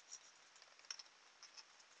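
Near silence with faint small clicks and taps of hands handling a plastic bottle-top wheel and wooden skewer axle, the sharpest click about a second in.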